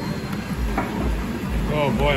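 Bar background of people talking over the steady low beat of background music, with a nearby voice coming in near the end.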